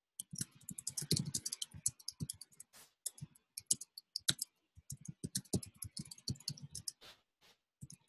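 Typing on a computer keyboard: rapid, uneven runs of keystroke clicks broken by short pauses.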